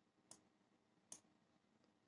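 Near silence, with two faint clicks about a second apart.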